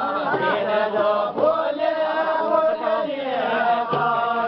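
A group of men singing a Kumaoni folk song together as they dance in a linked ring, holding long, drawn-out notes in unison. A few sharp beats cut in, one about a third of the way in and another at the very end.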